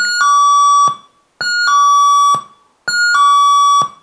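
A cheap sound-effect chip module, driven by one NPN transistor, plays an electronic two-tone "ding-dong" chime through a loudspeaker three times. Each chime is a short higher note stepping down to a longer lower note, which cuts off sharply.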